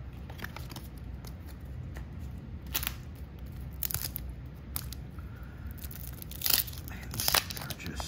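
A wax-paper card-pack wrapper being torn open and peeled back by hand, giving a series of sharp, irregular crackles; the loudest come about six and a half and seven seconds in.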